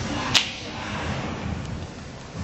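A single sharp snap or click about a third of a second in, over steady background noise of a large hall.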